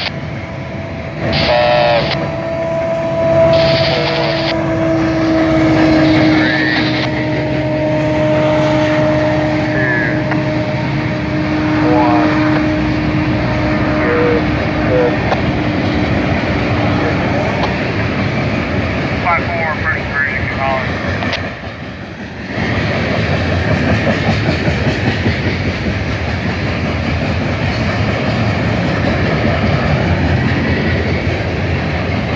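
Freight cars rolling past at speed with a steady rumble. A long steady tone rides over it through the first half and slowly fades. In the second half comes an even clickety-clack of wheels over rail joints.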